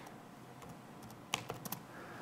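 A few quiet keystrokes on a laptop keyboard, most of them in a quick cluster past the middle.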